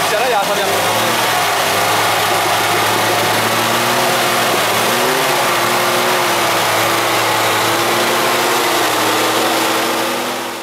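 Suzuki Santana 4x4's engine running steadily under load, its revs rising and falling a little, as the vehicle is pulled up a steep muddy rut on a winch cable.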